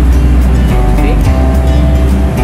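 Background music with a heavy bass line, held notes and a steady beat.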